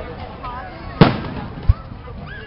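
Fireworks: one sharp, loud bang about a second in with a short fading tail, then a smaller low thump near the end.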